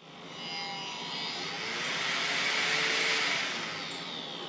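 A 12 V blower part-cooling fan on a 3D printer's hot end running at reduced PWM: rushing airflow with a faint high-pitched whine caused by the PWM switching. It swells up and peaks about three seconds in, then eases off.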